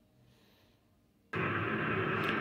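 Near silence, then a steady rushing noise starts suddenly about a second and a half in: a 'space sound' presented as the sound of Jupiter's moon Helike, played back from a screen.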